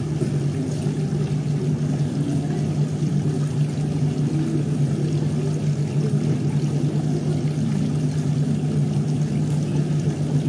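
A steady low hum with a rushing noise, unbroken and even in level.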